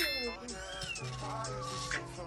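Background music over which a kitten mews briefly, about half a second in; a chime sound effect from an on-screen subscribe animation is fading out at the very start.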